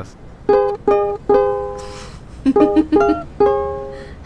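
A ukulele being strummed: three chords about half a second apart, the last left to ring, then after a short pause a quicker run of chords ending on another ringing chord.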